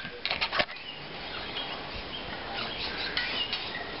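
Rustling and light clicking of a hand scratching a deer's coat close to the microphone, in two spells: a cluster of clicks about half a second in, and more rustling around three seconds in.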